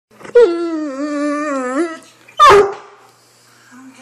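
Great Dane vocalizing to ask for a walk: one long, wavering, whine-like howl lasting about a second and a half, then a single short, loud bark.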